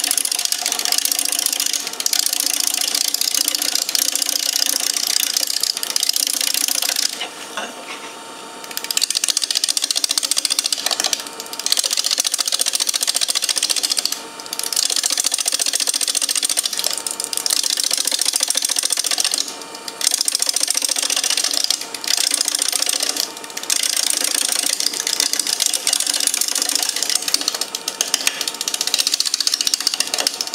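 A turning tool cutting a spinning wooden bowl blank on a woodturning lathe: a loud, continuous hissing scrape as shavings come off. It is broken by a longer pause and several brief ones when the tool leaves the wood, and in those gaps the lathe's steady motor hum comes through.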